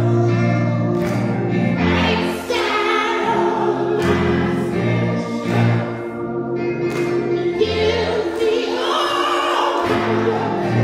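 Church choir singing a gospel song, backed by held bass chords from a keyboard and a beat from a drum kit.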